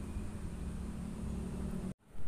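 Steady outdoor background noise, mostly a low rumble with a faint high steady hiss, that cuts off abruptly near the end.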